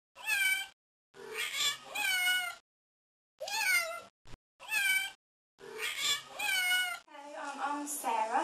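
A cat meowing repeatedly: about seven separate meows, several rising and then falling in pitch, with short silent gaps between them and a brief click around the middle.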